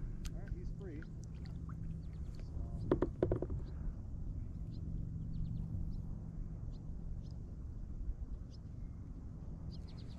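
A kayak drifting on calm water: faint drips and light ticks over a low steady rumble, with a short voice-like sound about three seconds in.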